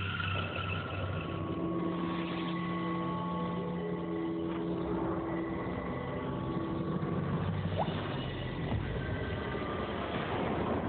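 Dramatic background score: a steady drone of long held low and mid notes, with a short rising glide about eight seconds in.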